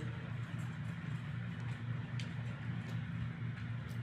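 A steady low electrical hum, with two faint clicks about 2 and 3.5 seconds in, typical of a stylus tapping a drawing tablet while a straight-edged lasso selection is being clicked out.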